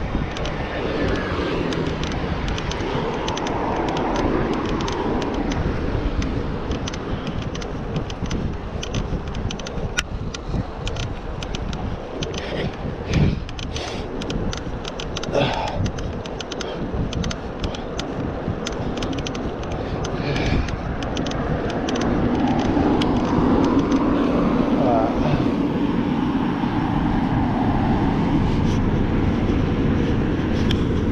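Steady wind rush on the microphone from a bicycle riding along a road, with motor traffic passing. It grows louder in the last third as a car passes close by.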